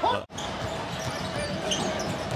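Basketball game sound in an arena: a ball being dribbled on a hardwood court over a low crowd murmur, after a brief dropout in the sound about a quarter second in.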